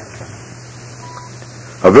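A single short, steady beep about a second in, over a faint steady hum. It is the cue tone of a slide-tape presentation, marking the change to the next slide.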